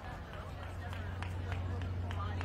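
Quick footsteps of a handler jogging on grass, about three steps a second, over a steady low hum and background crowd chatter.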